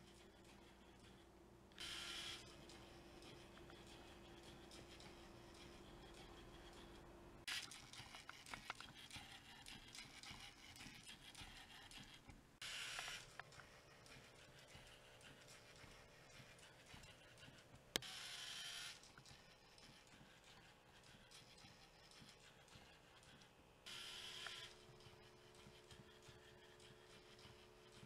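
Near silence broken by four short, faint whirs, about 2, 13, 18 and 24 seconds in, from a LEGO Mindstorms EV3 robot's motors driving in brief moves as it squares itself on a line.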